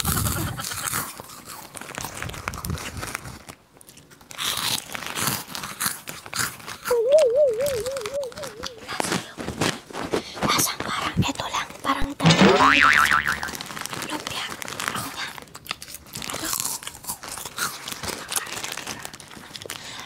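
Close-miked crunching and chewing of crispy junk-food snacks, with plastic snack wrappers crinkling. A wobbling boing-like tone comes in about seven seconds in, and another sweeping tone near thirteen seconds.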